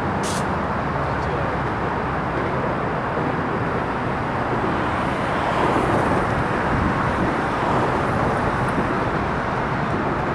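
Steady rumble of road traffic, with a short sharp click just after the start.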